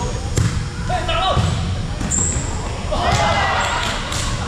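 Hollow thumps of a volleyball being hit and bouncing on a hardwood gym floor, mixed with players calling out, all echoing in a large hall. The sharpest thumps come about half a second and two seconds in.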